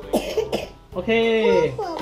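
A young child's excited speech, with a short cough near the start.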